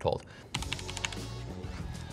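Typing on a Roccat Vulcan Pro keyboard with linear Titan optical-mechanical switches: a quick, steady run of light key clicks that starts about half a second in.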